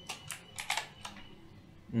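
A few light computer-keyboard keystrokes, about half a dozen sharp clicks within the first second.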